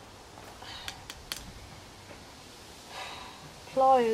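A few light, sharp clicks and taps from a screwdriver and hand tools being handled on a concrete driveway, spread over the first second and a half.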